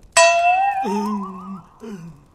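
Cartoon sound effect: a bright, bell-like chime struck once, its tone then wobbling upward in pitch for about a second and a half. Partway through, a character gives a short, thoughtful 'hmm'.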